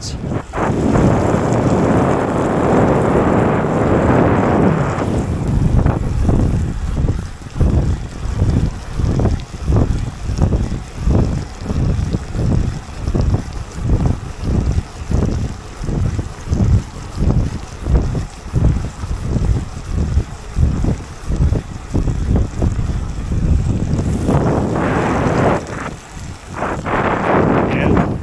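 Wind noise on the microphone of a bicycle-mounted camera while riding at speed on a wet road. About five seconds in it starts to pulse in a steady rhythm, roughly twice a second, and it evens out again near the end.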